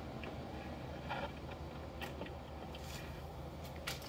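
A steady low rumble with a few brief rustles and scrapes as plastic tarpaulin sheeting brushes against the handheld phone.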